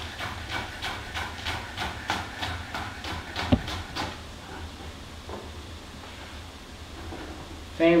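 Chef's knife chopping green onions on a wooden cutting board, a steady run of knocks about three a second with one louder knock, stopping about four seconds in.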